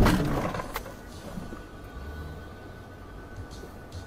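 The noise of a car-to-car collision dying away over the first second, as a red-light runner strikes the front of the car, with a single knock shortly after. Then a low steady rumble inside the stopped car's cabin, with a faint steady high tone.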